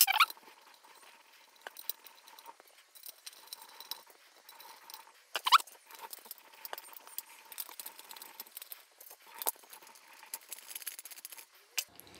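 Precision screwdriver turning small screws out of the metal base of a Blue Yeti microphone: faint scratchy ticking and scraping, with a few sharper clicks as the small screws are put down on a wooden table, the loudest about five and a half seconds in.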